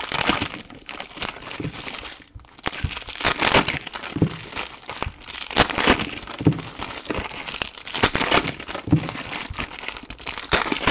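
Foil trading card pack wrappers crinkling and tearing as hands rip the packs open, in irregular crackles with a brief lull about two seconds in and a few soft knocks.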